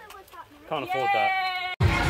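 Faint children's voices, then a party blower sounding a steady, buzzing high-pitched tone for about a second that stops abruptly. Near the end, loud restaurant chatter and background music cut in.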